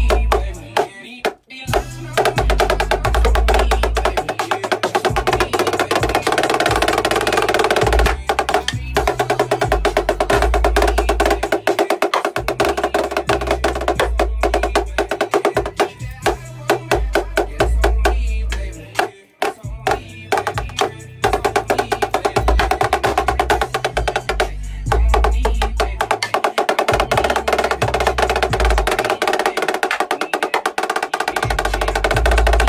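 Marching snare drums played fast with sticks: dense rolls and rapid stroke patterns, broken by short pauses about a second in and again near the middle.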